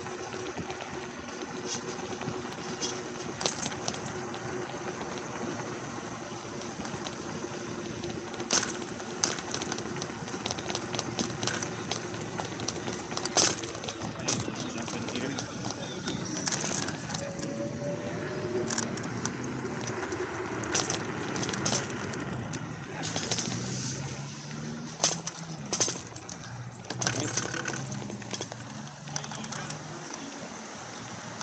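Ride noise from an MTRides SKRT electric scooter rolling along sidewalk and pavement. A steady hum runs through the first half, sharp knocks and rattles come as it rolls over joints and bumps, and road traffic sounds behind it.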